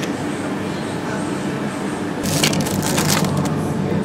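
Plastic-and-cardboard sandwich packaging crinkling and crackling as it is handled, starting about halfway through and lasting about a second, over the steady hum of a shop's chiller cabinets.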